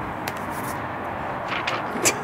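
Steady outdoor background noise, with a few light clicks and, near the end, brief rustles as a paper drawing and a crayon box are picked up and handled.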